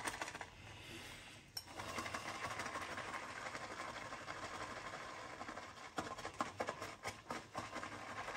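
Boar-bristle shaving brush whisked briskly in a ceramic bowl, building lather: a soft, rapid, scratchy swishing, with a short lull about a second in and a few sharper ticks of the brush against the bowl later on.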